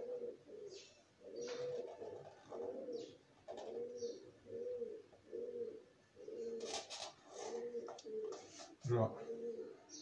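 Pigeon cooing: a run of short, low, repeated coos, about two a second.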